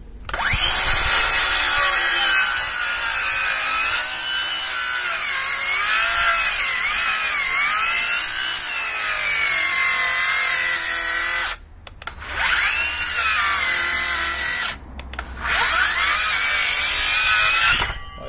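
DeWalt cordless circular saw cutting through a fresh, still-wet softwood garden sleeper, its high whine sagging in pitch as the blade loads up in the wood; it struggles a bit with the wet timber. The saw stops briefly twice in the second half, then starts again and cuts on.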